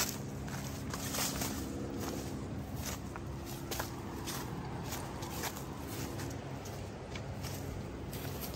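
Footsteps crunching along a woodland trail through dry leaves, grass and twigs, in an irregular run of short crackling steps.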